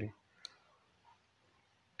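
Two faint clicks of a computer mouse button, about a second and a half apart, as a fill is dragged out on screen.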